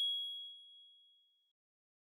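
A single bright electronic ding of a logo sound sting, which fades out within about a second and a half.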